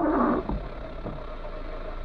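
A windscreen wiper blade sweeps across the wet glass with a short, loud rubbing groan in the first half second. A low thump comes about half a second in, under a steady car hum.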